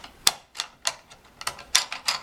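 Wooden Montessori spindles clicking against one another and the wooden box as a handful is taken up: a quick, uneven run of sharp wooden clicks, about eight in two seconds.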